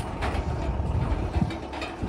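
Steel flatbed shopping cart with a perforated plastic deck rattling and clattering as its wheels roll over asphalt, with a low rumble underneath.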